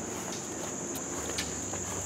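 Insects chirring outdoors in a steady, high-pitched drone, with a few faint ticks.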